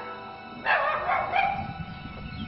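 A small black-and-tan dog barking twice, in quick succession, over background music.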